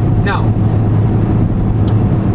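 Steady road and engine drone inside a moving car's cabin, a constant low hum with a small click near the end.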